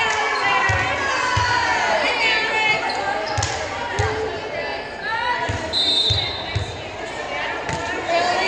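Volleyball players' voices shouting and calling over one another, echoing in a gymnasium, with irregular dull thumps of a ball bouncing on the hardwood floor. A short referee's whistle blast sounds about six seconds in.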